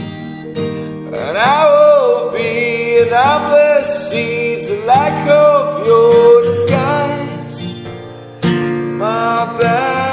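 A song with a voice singing sustained, gliding phrases over guitar accompaniment.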